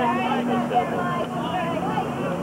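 Many voices chattering and calling at once at a baseball game, overlapping so that no words stand out, over a steady low hum.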